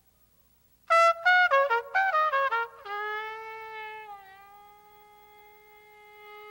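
Unaccompanied jazz trumpet: about a second in, a loud quick run of short notes stepping downward, then one long held note that slowly fades away.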